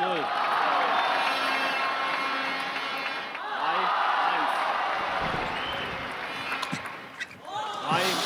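Large arena crowd at a table tennis match applauding and cheering, with shouts rising out of the noise now and then. It dies down about seven seconds in.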